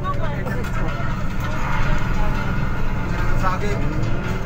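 Steady low rumble of a bus engine heard inside the passenger cabin, with a slowly rising hum starting near the end.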